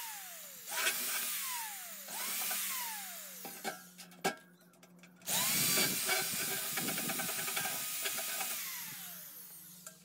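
Corded electric drill working on the metal spider of a washing machine drum: two short bursts, each trailing off in a falling whine as the motor coasts down, a pause with a couple of clicks, then a longer run from about halfway that fades as it winds down.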